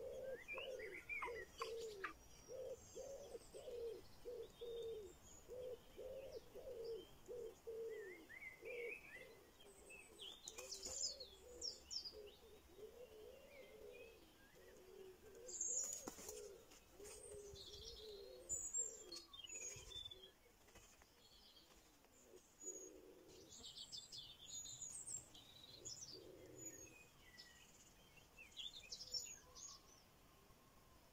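Faint bird calls: a quick run of low, repeated notes for about the first half, with scattered high chirps and short trills throughout.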